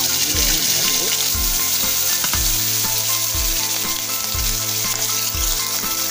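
Whole tangra fish (small catfish) frying in hot oil in a kadai: a loud, steady sizzle as the fish go into the oil. Background music with a low beat about once a second plays underneath.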